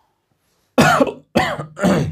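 A man coughing three times in quick succession.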